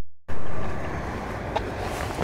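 Outdoor background noise, a steady rushing hiss, starting abruptly about a quarter second in, loud at first and then settling lower. There is a faint click about one and a half seconds in.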